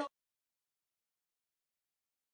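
Silence: the hall sound cuts off abruptly at the very start, leaving dead digital silence.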